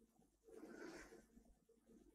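Near silence: faint room tone, with a slightly louder low sound from about half a second in to just past a second.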